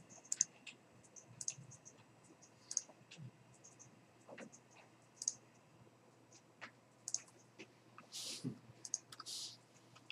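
Faint, irregular clicks of a computer keyboard and mouse as code is typed and the page scrolled.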